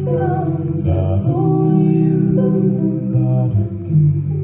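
Mixed-voice a cappella group singing through handheld microphones: lead voices over sustained backing harmonies, with a steady low sung bass line underneath.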